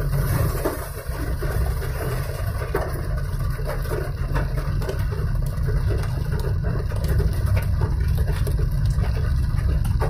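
Heavy rain drumming on a car's roof and windshield, heard from inside the cabin as a dense patter of drops over a steady low rumble.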